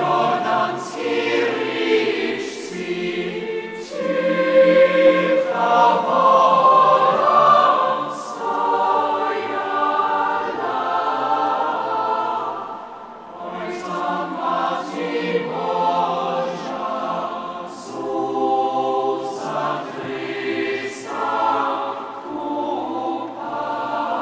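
A large choir of adult and children's voices singing a carol together in long phrases, swelling loudest a few seconds in and easing back briefly about halfway through.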